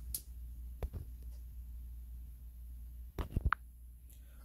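Quiet room tone with a steady low hum, broken by a few faint clicks: one at the start, one about a second in, and a short cluster with a brief tone about three seconds in.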